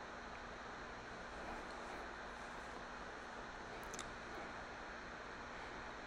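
Faint, steady room tone with a light hiss, and one small click about four seconds in.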